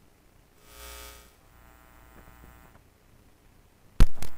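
Near silence: a gap in the broadcast audio, broken about a second in by a faint brief hum with many overtones and, a little later, a few faint ticks.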